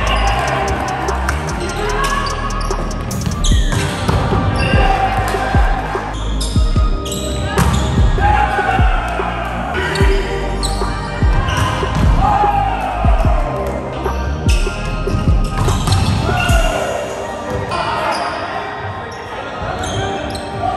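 Indoor volleyball rally: the ball being struck again and again on serves, passes and spikes, each hit sharp and echoing in the gym, with players calling out between the hits.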